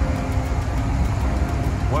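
City traffic rumbling past, with wind buffeting the microphone in a steady low rumble.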